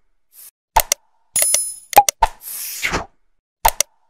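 Animated end-card sound effects: a short bell-like ding, several sharp clicks, and a whoosh that falls in pitch, repeating about every three seconds.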